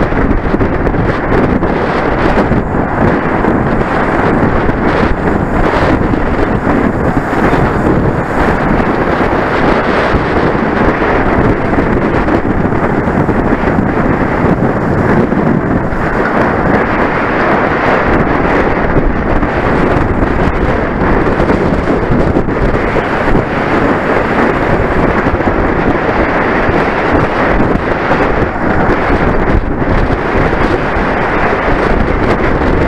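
Wind buffeting the microphone of a handlebar-mounted camera on a racing bicycle at speed: a loud, steady, low rush with no breaks.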